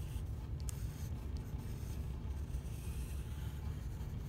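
Pencil scratching lightly on watercolor paper as an outline is sketched, faint over a steady low room hum.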